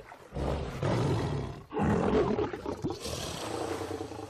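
A lion growling twice, each growl rough and more than a second long.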